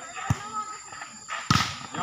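A volleyball is struck twice by players' hands: a lighter hit about a third of a second in and a louder, sharper smack about a second and a half in. Players' and onlookers' voices run under the hits.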